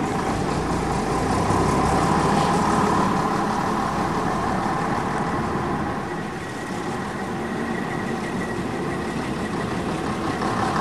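Vintage bus engine running steadily, growing louder about a second and a half in and easing off again around six seconds.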